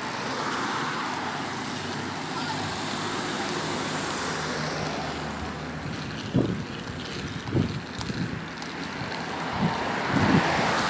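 Steady rushing noise of wind on the phone's microphone while walking along a street. A few brief fainter sounds come in the second half.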